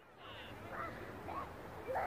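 Quiet outdoor background with a few faint, short distant calls.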